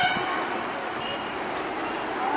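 Vehicle horn honking over steady outdoor background noise: one honk cuts off right at the start, and a short, faint toot comes about a second in.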